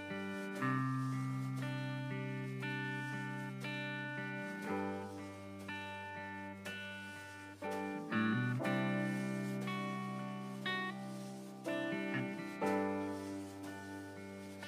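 Quiet instrumental intro to a worship song: guitar and keyboard playing slow, sustained chords, a new chord about every two seconds, with no singing yet.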